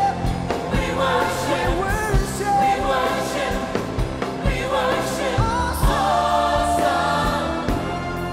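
A male vocalist singing a gospel worship song with a live band, a drum kit keeping a steady beat underneath.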